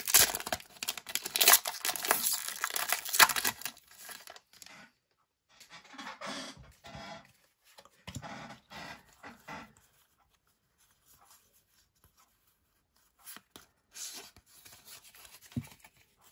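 A foil Pokémon booster pack wrapper being torn open by hand: loud crinkling and tearing for about the first four seconds. Then quieter, intermittent rustling, with a few seconds of near silence in the middle.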